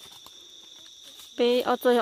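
Insects in the forest droning in a steady, high-pitched, unbroken tone.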